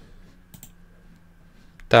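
A single faint computer mouse click about a quarter of the way in, over quiet room tone, as the emulator window is grabbed to be dragged. A man's voice begins a word at the very end.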